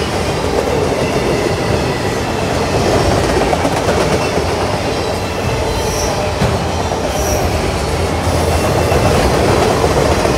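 Freight train of autorack cars rolling past on steel rails: a steady loud rumble and clatter of wheels, with two brief high squeals about six and seven seconds in.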